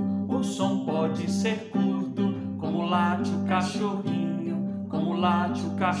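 A children's song in a samba-like rhythm: acoustic guitar strummed steadily under singing voices.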